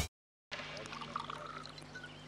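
Faint sound of a drink being poured into a glass, starting about half a second in.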